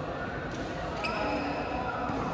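Badminton rally in a large indoor hall: rackets striking the shuttlecock, with sharp hits about half a second and a second in, the second one ringing briefly from the strings. Steady chatter of voices echoes around the hall.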